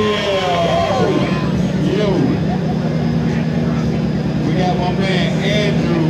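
Ford Mustang engine idling steadily, with a crowd's voices over it.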